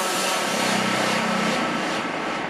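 Psychedelic trance track in a break with no kick drum: a dense, gritty synth noise wash, with a buzzing low synth tone in the middle.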